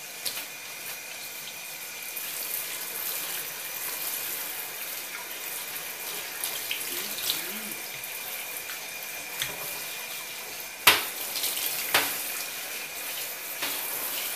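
Water spraying from a handheld shower head onto a wet cat in a bathtub, a steady hiss with a faint high whine underneath. Two sharp knocks about a second apart near the end, the first the loudest sound.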